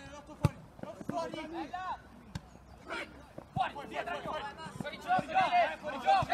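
A football kicked hard once, about half a second in, with a few lighter knocks of the ball later, amid shouts from players and spectators that grow louder near the end.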